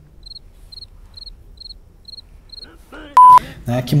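A run of six faint, high, evenly spaced chirps, about two a second, followed a little after three seconds in by a single loud, pure electronic beep tone lasting a fraction of a second, then a man starting to speak.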